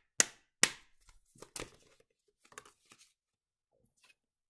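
A deck of Lenormand cards being handled: two loud, sharp snaps in the first second, then several softer clicks and taps until about three seconds in.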